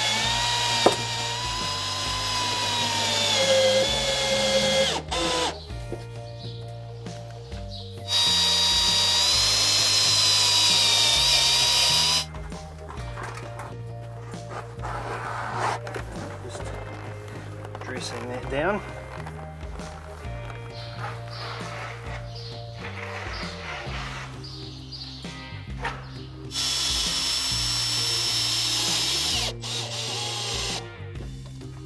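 Cordless drill driving roofing screws through corrugated steel roof sheets, in three separate runs of steady high whine: one at the start, one of about four seconds near the middle third, and a shorter one near the end. Background music plays underneath throughout.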